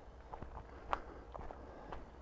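Footsteps at walking pace on a dirt footpath scattered with fallen leaves, a string of soft scuffs with one sharper click about halfway through.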